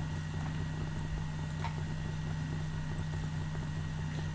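Steady low electrical hum in the recording, with a couple of faint clicks about a second and a half in.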